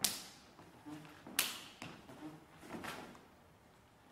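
Sharp slaps of hands and forearms meeting during a punch-and-block exchange. The two loudest come at the very start and about a second and a half in, with softer contacts after them.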